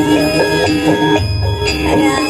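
Live band music accompanying a burok dance: a melody over a deep low beat that swells near the middle.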